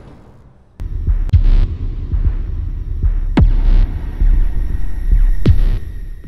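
Cinematic logo-intro sound effects: a deep rumbling bass that kicks in abruptly about a second in, with heavy booming hits and two sharp falling whoosh sweeps, the strongest about halfway through and near the end.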